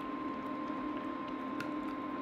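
Refried beans being scraped out of a can with a silicone spatula into a pot of chili, with soft squishing and a few faint clicks, over a steady hum.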